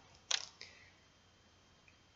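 A single short click about a third of a second in, with a faint trailing sound just after, then low room tone.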